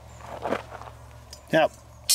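Quiet handling noise with one soft scuff about half a second in, as the broken steel scissor blades are moved and stood against a wooden timber; a man says "yep" near the end.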